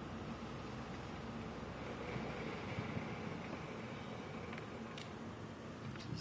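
Steady low hum of a car driving slowly, heard from inside the cabin: engine and tyre noise, with a couple of faint clicks near the end.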